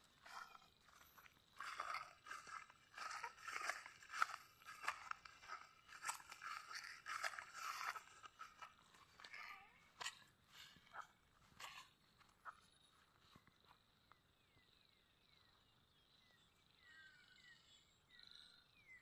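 Faint, irregular crunching and rustling of footsteps through grass. It thins out after about eight seconds to a few scattered clicks.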